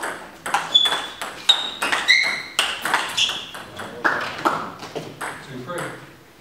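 Table tennis rally: the ball clicking sharply off the bats and the table in quick alternation, about two to three hits a second, with the rally ending just before the close.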